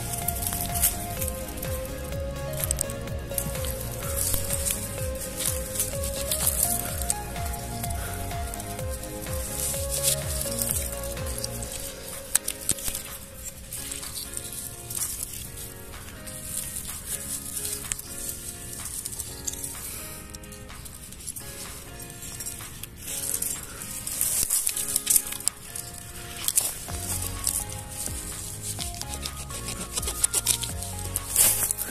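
Background music with a melody and bass line; the bass drops out about twelve seconds in and comes back near the end. Under it, a crackly rustle and small snaps of dry grass and stems as the mushrooms are cut.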